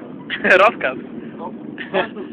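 Men's voices talking and shouting over a steady low rumble, with one loud shout about half a second in.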